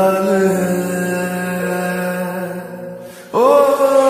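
Slowed, reverb-heavy Bollywood song: a singer holds one long note that slowly fades, then a new sung note begins with an upward slide a little over three seconds in.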